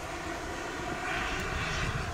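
Kerosene turbine engine of a T-45 Goshawk model jet in flight: a steady rushing whine that swells a little in the second half as the jet passes.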